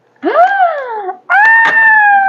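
A woman's high-pitched wordless exclamations: a short 'ooh' that rises and falls, then a long held squeal, with a couple of sharp clicks alongside.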